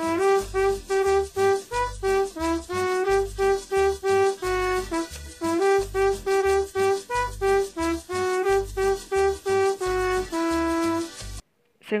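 Trumpet playing a lively phrase of short, rapidly repeated notes, mostly on one pitch with brief dips to a lower note, stopping abruptly shortly before the end.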